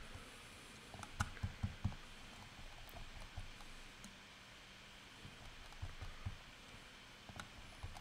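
Quiet room tone with a few soft computer-mouse clicks: a quick cluster a second or so in, then a few scattered ones later.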